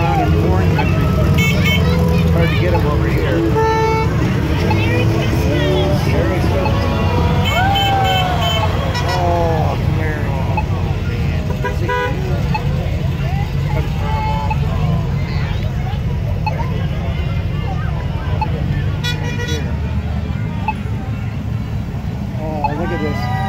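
Decorated parade cars driving slowly past with a steady low engine rumble, and car horns tooting briefly several times. Spectators' voices can be heard around them.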